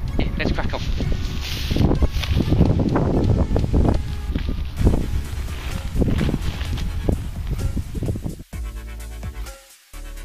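Wind and handling noise rumbling on the microphone, with a man's indistinct voice. About eight and a half seconds in this cuts off abruptly and an electronic dance-music track starts.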